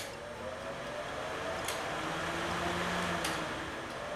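Electric fan running, a steady whirring rush that swells a little in the middle and eases near the end, with a faint hum partway through and two faint ticks.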